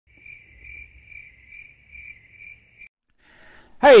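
A high-pitched, steady chirping trill that swells about twice a second and stops a little before three seconds in. A man's voice starts right at the end.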